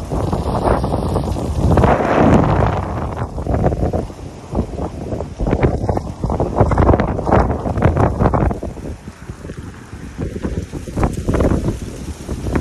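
Wind buffeting a phone's microphone in loud, low gusts that rise and fall, easing briefly about nine seconds in before picking up again.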